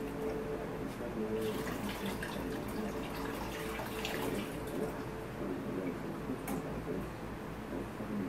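Hands working wet clay in a plastic bucket, making wet, splashy handling noises with a few sharp clicks. A steady hum runs underneath.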